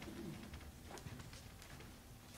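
Hushed audience in a large, echoing church, with scattered small clicks and rustles and a brief low, voice-like hum near the start.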